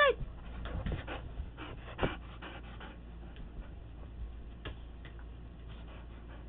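A dog panting in quick, short breaths for about two seconds, then a few scattered light ticks.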